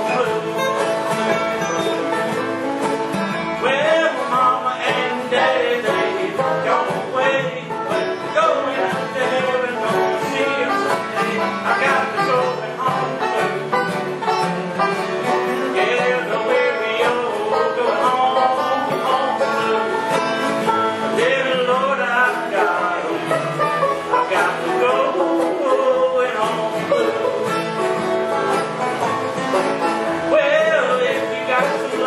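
Bluegrass band playing, the banjo prominent, with mandolin and upright bass.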